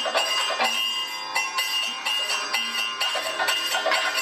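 Kathakali percussion accompaniment: a quick, even run of metallic strikes, the cymbals and gong ringing on between beats.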